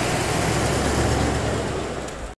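A 1956 Continental Mark II V8 coupe driving past on a paved road: a steady rush of engine and tyre noise with a deep rumble, easing slightly near the end.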